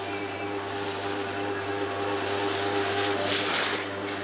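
Steady droning hum with a few held tones, and a rushing hiss that swells over the last second and a half, is the loudest sound, and stops suddenly just before the end.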